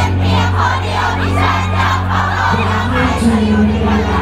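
Concert audience singing along loudly in unison over a live band's bass and drums.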